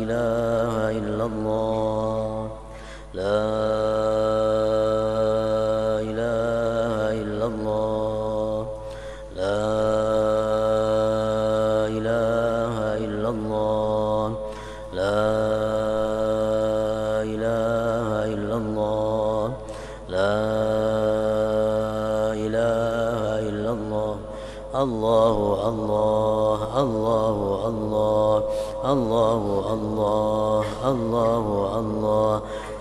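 A man's voice chanting Islamic dhikr in long, drawn-out melodic phrases, pausing for breath about every six seconds. In the last few seconds the melody wavers more quickly.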